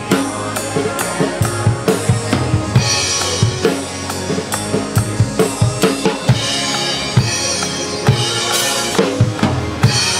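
Close-miked acoustic drum kit playing a steady kick-and-snare groove along with a worship song's multitrack backing track, with cymbal crashes about three seconds in and again near the end.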